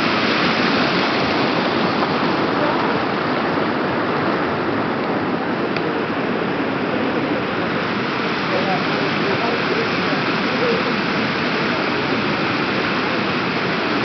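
Stream water rushing steadily, a constant loud wash, with faint voices under it.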